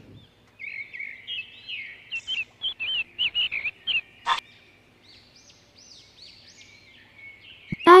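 Small birds chirping: a quick run of short, high chirps, with one sharper, louder note a little past halfway, then fainter arching calls.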